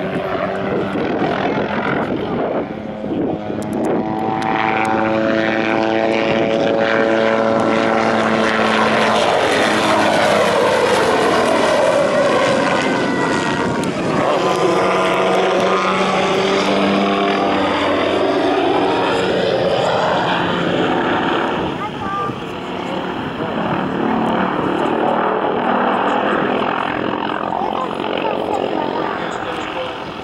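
MD 500 light helicopter's turboshaft engine and rotors running hard through an aerobatic display, with the pitch sliding down and back up as it passes and turns.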